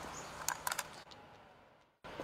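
Faint outdoor background noise with a cluster of three or four short clicks a little after half a second in, then the sound fades away to silence.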